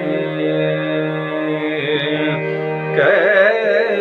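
Male voice singing a Hindustani khayal in Raag Bihag over steady sustained accompanying notes. About three seconds in the voice grows louder and breaks into a quick, wavering ornamented run.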